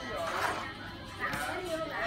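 Faint, indistinct voices of a child and an adult, with no clear non-speech sound.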